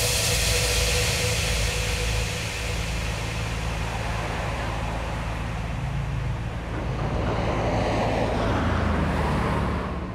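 Road traffic: a steady wash of passing cars, swelling near the end as a small shuttle bus drives close by.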